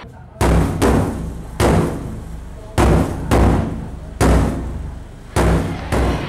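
Seven heavy, deep booming hits at uneven intervals, each ringing out before the next: dramatic percussion hits opening the song's backing track.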